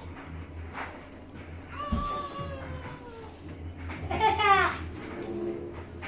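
Two short, high whining calls about two seconds apart: the first falls in pitch, the second, louder one rises and falls. Under them runs a low steady hum.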